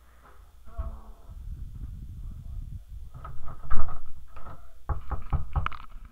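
Handling noise from a hand moving an iPod on a tabletop: rubbing and shuffling with several knocks. The loudest knock comes a little under four seconds in, and a cluster follows near the end.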